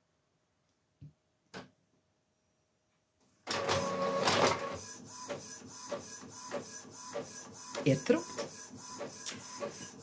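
Inkjet printer starting a colour print job about three and a half seconds in, running with a steady whir and a train of regular mechanical clicks. Before it starts there are two faint soft knocks.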